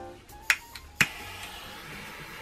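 A handheld butane torch's igniter clicking twice, about half a second apart; on the second click it lights and the flame hisses steadily, as it is passed over wet pouring paint to bring up cells.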